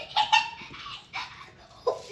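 A young girl imitating a dog with short barking yelps, four of them, a close pair just after the start and two more later.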